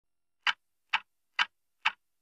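Clock-like ticking opening the song's intro: four sharp, evenly spaced ticks, a little over two a second, with silence between them.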